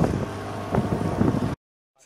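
Motorised wooden dugout canoe under way: a steady outboard-motor hum under water rushing along the hull, with wind on the microphone. It cuts off suddenly about one and a half seconds in.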